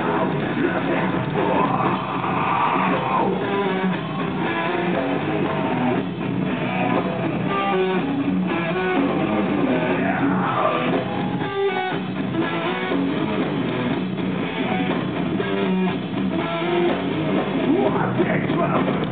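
Rock band playing live at loud volume, with strummed electric guitar, heard from within the audience.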